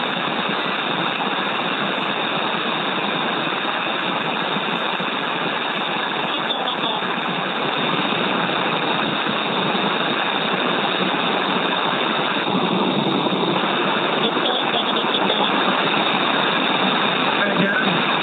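Steady hiss of air flowing through the pressurized SpaceX EVA suits, picked up by the suit microphones on the crew comms loop. This background noise is expected during suit pressurization; it gets a little louder partway through.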